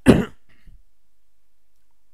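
A person coughing once, briefly and loudly, right at the start.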